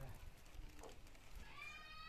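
Faint, scattered knocks of dry firewood sticks being handled and laid down. About three-quarters of the way through, a high-pitched wavering call begins.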